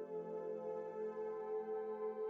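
Quiet ambient background music: a steady drone of sustained, held tones.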